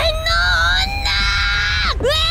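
A woman's voice yelling one long, drawn-out angry cry of 'anno onna~!' ('that woman!'), held for almost two seconds and dropping away at the end, over a low rumble.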